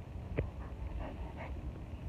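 A chow chow making a few short, soft sounds close to the microphone: one sharper sound about half a second in, then fainter ones, over a low handling rumble from the phone.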